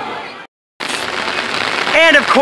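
Carousel music and crowd sound fading out, a brief break, then the steady noise of heavy rain pouring down.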